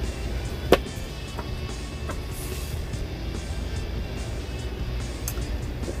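Soft background music over a steady low hum, with one sharp click less than a second in.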